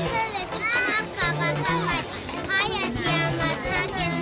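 Children's voices chattering and calling out over background music with held bass notes.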